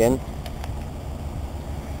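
Lincoln Town Car engine idling, a steady low rumble.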